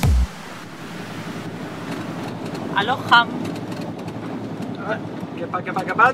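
Electronic music cuts off right at the start, leaving a steady background hiss of the boat cabin with a few brief snatches of voices.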